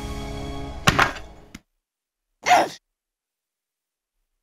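Background music on a held chord with a sharp thunk about a second in, a dramatic hit as cake is smashed into a face. The music then cuts off into silence, broken about two and a half seconds in by one short voice-like sound that falls in pitch.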